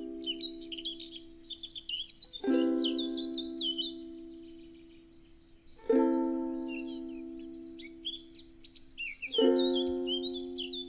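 Soft background music: a chord struck about every three and a half seconds and left to ring out and fade, with birdsong chirping over it.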